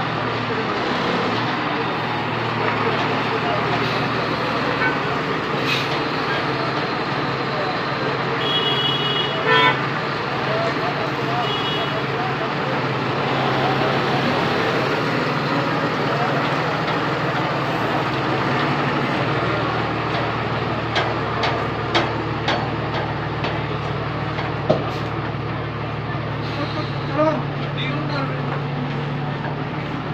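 Tata tipper truck's diesel engine running steadily close by, its low hum changing pitch about two-thirds of the way through, amid street noise and background voices. A vehicle horn toots briefly, twice, about a third of the way in.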